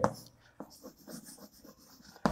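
Chalk writing on a blackboard: faint, irregular short scratches and taps as the letters are stroked out.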